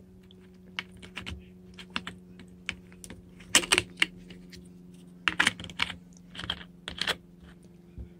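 Plastic drink bottle being handled by its screw cap: irregular clicks and crackles of the cap and thin plastic, with the loudest clusters a little past a third of the way in and again about two-thirds in. A steady low hum runs underneath.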